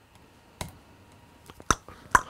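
A few sharp computer mouse clicks: one about half a second in and a couple more near the end, the last with a short ringing tail.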